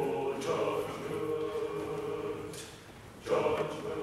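Mixed chamber choir singing a spiritual arrangement in sustained chords. The sound thins to a quiet moment a little before the end, then the choir comes back in louder.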